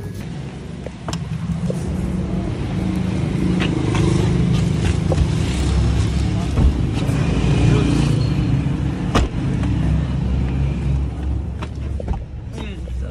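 A car engine running with a steady low rumble, with plastic carrier bags rustling and a few sharp knocks, the loudest about nine seconds in, as the bags are loaded into the car's boot.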